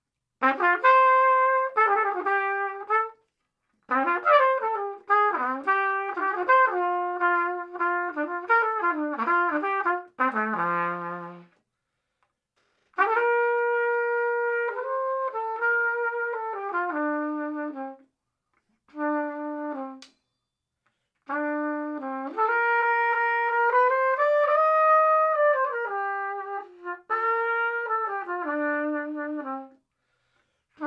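Solo trumpet played through a plastic BRAND 'Jazz' mouthpiece: phrases of quick scale-like runs and held notes in the middle register, separated by short breath pauses. About a third of the way through, one run drops to a very low note.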